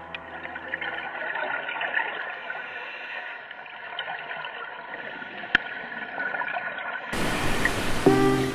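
Muffled underwater sound through a camera housing: a faint wash of water with scattered crackles and one sharp click about five and a half seconds in, after music fades out in the first second. Near the end a loud rushing hiss sets in.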